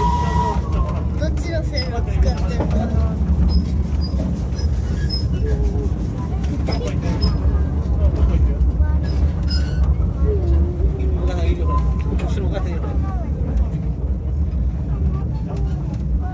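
A small narrow-gauge steam train running, heard from the coach just behind the locomotive: a steady low rumble with scattered clicks of the wheels on the track. A held whistle note cuts off about half a second in, and people's voices murmur underneath.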